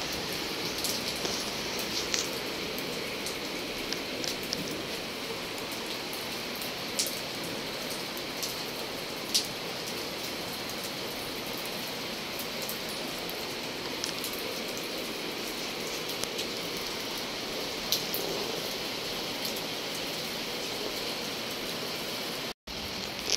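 Steady rain falling on a concrete rooftop and balcony, with a few sharper drop ticks here and there.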